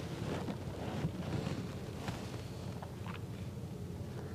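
Low steady room noise with faint scratches and a few light ticks from watercolor brushes working on paper.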